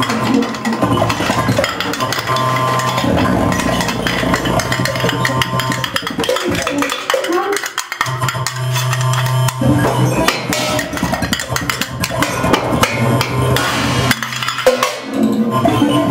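Free-improvised music: drumsticks clicking, tapping and scraping on cymbals and small metal percussion in a dense, irregular clatter. Underneath, a sustained low tone drops out twice and comes back.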